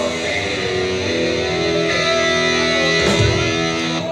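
Live rock band with electric guitars, the guitars ringing on long held chords, with a low thump about three seconds in.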